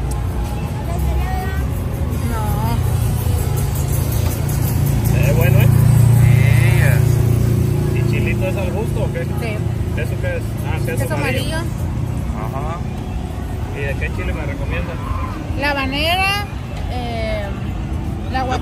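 Street traffic, with a vehicle passing whose low rumble is loudest about six seconds in, under scattered background voices and music.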